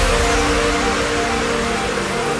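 Electronic dance music (complextro): with the drums gone, sustained synth chords ring on over a hiss, slowly fading away.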